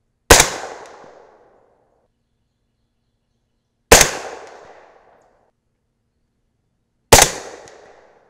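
Three shots from a suppressed 300 AAC Blackout semi-automatic rifle with a 10.3-inch barrel, firing 220-grain Nosler Custom Competition subsonic loads at about 1030 feet per second. The shots come about three and a half seconds apart, each a sharp report with a tail that rings out for about a second.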